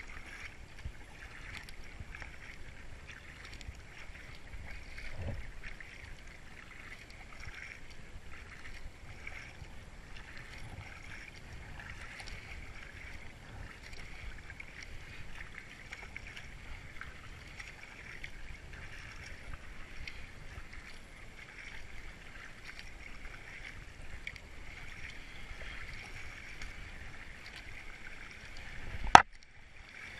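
Kayak paddle strokes on calm river water: the double-bladed paddle dipping and splashing in a steady hiss of moving water. Near the end there is one sharp, loud click, followed by a brief drop to near silence.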